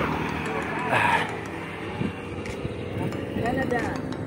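A motor vehicle, likely a motorcycle, passing on the road amid wind and road noise. There is a louder swell about a second in. Indistinct voices come near the end.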